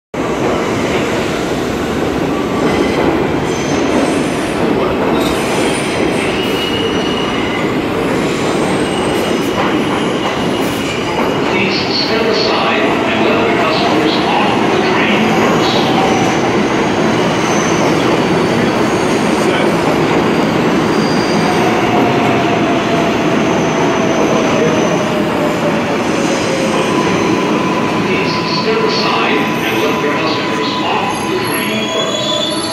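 New York City subway train of the R142 series running along the platform: a continuous loud rumble of steel wheels on rail with squealing from the wheels, one squeal sliding down in pitch a little past the middle and a steady one near the end.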